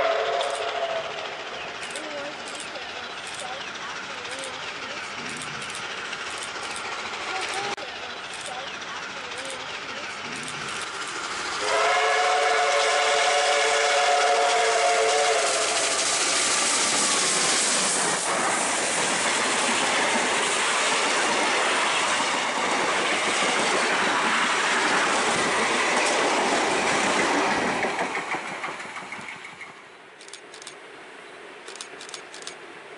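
Victorian Railways R class steam locomotive R711 sounding its chime whistle, a chord of several tones: a blast that ends about a second in, then a longer blast of about four seconds near the middle. The train then passes close and loud with its exhaust and rolling carriages, fading away near the end.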